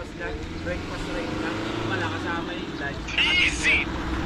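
Motorcycle engine running steadily, with people's voices talking over it.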